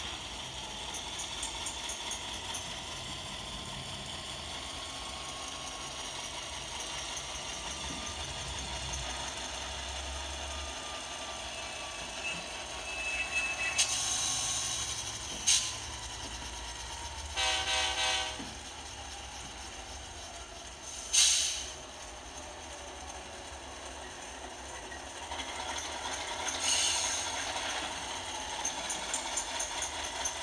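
Model locomotive chassis (Atlas Dash 8-40CW, HO scale) on a test run with its newly replaced motor: the motor and gear drive whir steadily as it travels along the track. The new motor is running well. A few sharp clicks and a short pitched tone come just past the middle.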